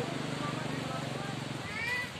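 A steady low drone with a fine even pulse, like a motor running, under outdoor voices, dying away about three-quarters of the way through. Near the end a short, high, rising voice.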